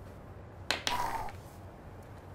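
Two sharp clicks a fraction of a second apart, a little past a third of the way in, followed by a brief faint tone.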